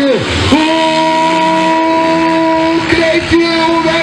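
Motocross bike engine: its pitch drops sharply, then climbs straight back and holds at a high, steady rev for about two seconds, with a small dip near the end.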